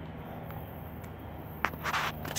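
Low, steady rumble of distant approaching diesel freight locomotives, with a sharp click near the end.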